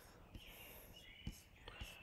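Near silence: faint room tone, with two soft clicks, one about a third of a second in and one a little past a second in.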